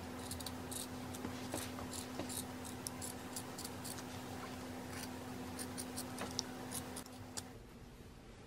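Scissors snipping through t-shirt fabric as the neckline is cut away: a long run of short, crisp cuts, over a low steady hum that stops near the end.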